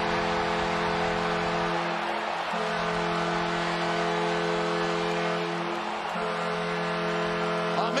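Arena goal horn sounding a steady multi-tone chord in three long blasts, with short breaks about 2.5 and 6 seconds in, over a cheering crowd, marking a home-team goal.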